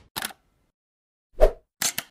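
Three short pop-like sound effects of a logo animation: a brief faint one near the start, a louder, deeper plop about a second and a half in, and a bright, sharp one near the end.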